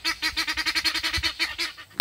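Domestic fowl calling from nearby: a rapid rattling series of pitched notes, about thirteen a second, for about a second and a half, ending in one short, loud, higher call.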